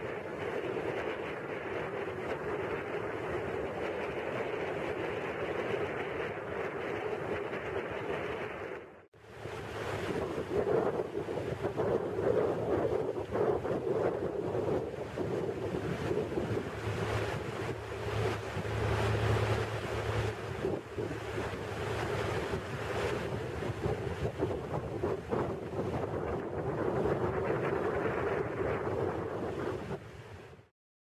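Motorboat under way: the engine runs steadily under wind buffeting the microphone and water rushing past the hull. The sound cuts out briefly about nine seconds in, then returns with gustier wind.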